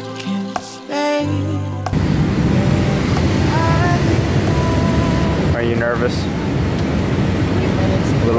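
Background music for about the first two seconds. It then cuts abruptly to the steady cabin noise of a jet airliner in flight, with faint voices over it.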